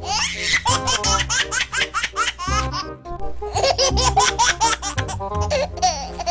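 A baby laughing in rapid bursts, in two long runs with a short break about halfway, over background music.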